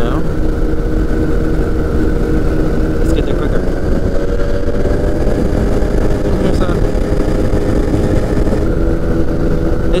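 The Rotax 912 engine and pusher propeller of a P&M Quik flexwing microlight drone steadily in cruise, mixed with heavy wind rush on an open-cockpit microphone. The engine note rises slightly about four seconds in.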